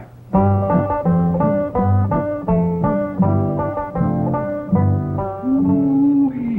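Short bluegrass banjo music cue bridging two scenes: quick picked banjo notes over a bouncing alternating bass, starting just after the dialogue stops and ending on a held note.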